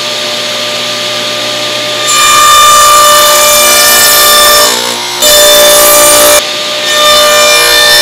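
Table saw running steadily, with three stretches of louder cutting as a pine board is fed through the blade: about two seconds in, just after five seconds, and near seven seconds. The blade is nibbling a dado groove wider pass by pass, with the fence shifted over, until it fits the mating tongue.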